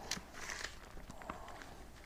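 Faint rustle of thin Bible pages being leafed through, with a few light ticks from the paper.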